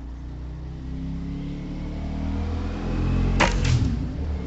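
Air rifle shot about three and a half seconds in: a sharp crack, then a moment later a second sharp report as the pellet strikes the metal rat knockdown target. Under it a low steady hum grows louder.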